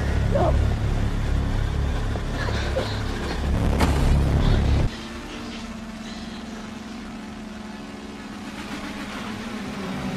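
Horror film soundtrack: a low rumble for about five seconds, then an abrupt cut to a quieter, steady low drone with a faint held hum.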